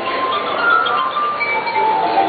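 Glass harp: a melody played on water-tuned wine glasses by rubbing their rims with the fingertips. Sustained ringing tones overlap and step from pitch to pitch.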